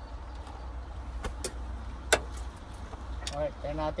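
A few sharp clicks and knocks as a fishing rod is handled, the loudest about two seconds in, over a steady low rumble. A man's voice starts near the end.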